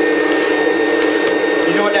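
Rainbow water-basin vacuum cleaner running steadily with a constant hum.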